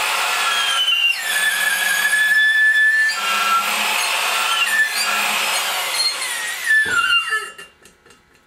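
Electric drill spinning a stone hone inside a cylinder head's valve guide, honing the guide out to set valve stem clearance. It runs steadily with a high whine that wavers in pitch, and stops about seven seconds in.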